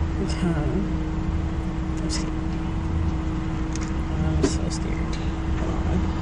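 Car engine idling, heard from inside the cabin: a steady low rumble with a constant hum. A short murmur of voice comes just under a second in, and there are a couple of small clicks.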